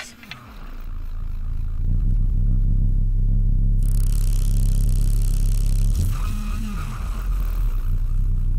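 Low, steady rumbling drone of a soundtrack bed swelling up in the first two seconds and holding. A high hiss cuts in about halfway, and faint wavering tones join near the end.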